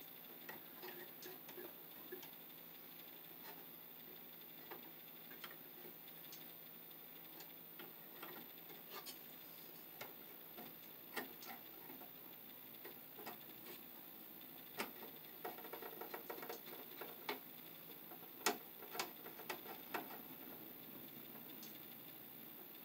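Faint, scattered small clicks and ticks from hand work on an old fuse box: a wire loop and its terminal screw being fitted and snugged down. The clicks come more often in the last few seconds.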